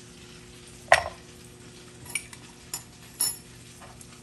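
Kitchen handling sounds from a small ceramic bowl and utensils on the counter: one sharp knock about a second in, then a few lighter clicks and knocks, over a faint steady hum.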